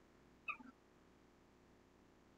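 A single brief, faint call from a pet animal, a short chirp-like cry about half a second in, against near silence.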